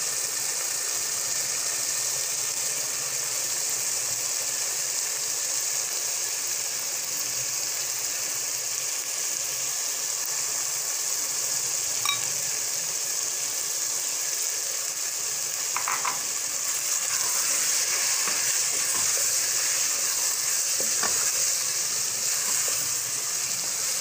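Keema masala with freshly added capsicum strips sizzling steadily in a pot, with a wooden spatula stirring through it now and then. One small click about twelve seconds in, and the sizzle grows a little louder in the second half.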